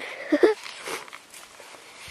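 Footsteps and rustling of leafy shrubs as a person pushes through dense brush, with a short voice sound about half a second in.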